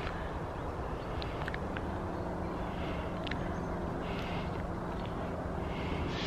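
Outdoor background noise: a steady low rumble with soft rustling now and then and a few faint clicks.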